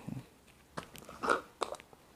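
Faint handling of a glass mug as it is picked up: a few small clicks and knocks, with a short scrape in the middle.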